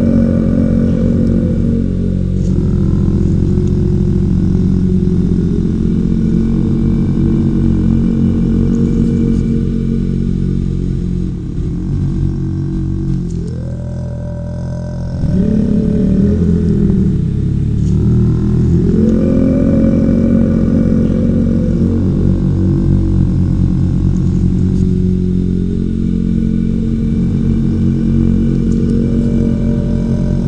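Low, steady drone of meditation music, rich in overtones, that swells and glides up in pitch in slow cycles about every fifteen seconds.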